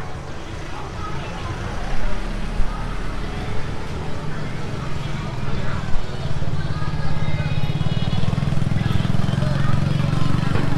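Street traffic in a narrow lane: a small delivery truck's engine runs low and grows louder over the second half as it comes close, with motorbikes and the voices of passers-by around it.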